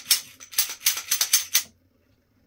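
Smith & Wesson M&P40 2.0 pistol being cleared by hand: its slide is worked, giving a quick clattering series of about a dozen metal clicks and clacks over a second and a half.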